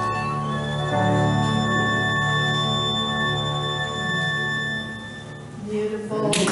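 Solo violin holding long closing notes over a recorded Yamaha Clavinova accompaniment. The music dies away about five seconds in, with a short last note just before the end.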